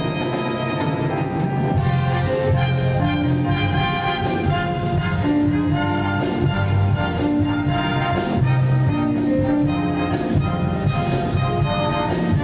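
Orchestra music led by brass, playing an upbeat tune with held notes over a steady beat.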